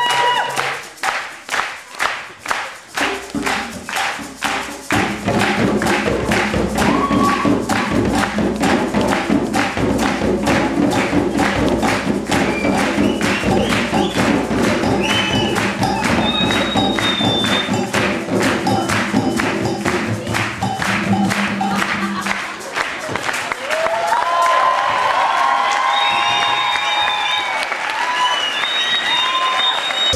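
West African djembe hand drums played by an ensemble in a steady driving rhythm with hand-clapping. The first few seconds hold mostly clapping, and the full drums come in after about four seconds.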